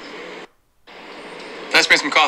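A short film dialogue clip played back twice. The line 'I just made some coffee' over steady soundtrack background cuts off about half a second in. After a brief silent gap the clip starts again, and the spoken line returns near the end.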